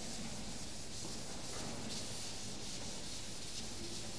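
Blackboard eraser wiping chalk off a chalkboard in repeated sweeping strokes, a steady scratchy rubbing.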